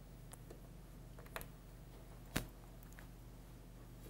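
Quiet room tone with a low steady hum, broken by a few small clicks from hands handling a camera rig, the loudest a little past two seconds in.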